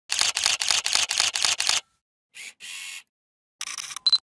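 Camera shutter sound effects: a rapid burst of about seven shutter clicks, about four a second, then two short noisy bursts and, near the end, another quick run of clicks.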